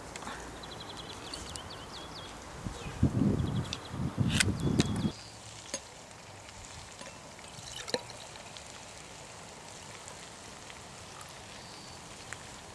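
Drink being poured from a jug into a glass wine glass, a soft, steady liquid pour over the second half. Before it, short high chirps and a loud low rumble lasting about two seconds.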